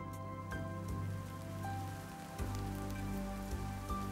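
Steady rainfall sound effect under background music of held notes over a low drone; the music moves to a new chord about halfway through.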